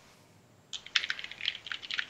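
Typing on a computer keyboard: a quick, uneven run of key clicks starting about three-quarters of a second in.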